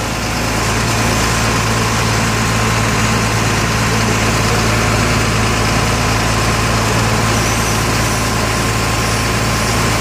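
Truck engine running steadily to power a hydraulic crane working a bucket over a hopper of hot asphalt, with a thin steady whine above the low engine hum; the level picks up slightly about a second in.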